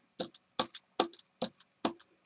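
A hand brayer being rolled back and forth through acrylic paint to ink it, with a short, sharp click about twice a second.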